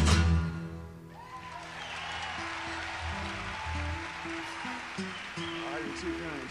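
A live rock band's closing chord rings out and dies away within the first second, then the audience applauds and cheers while scattered low instrument notes, bass and guitar noodling between songs, sound over the crowd.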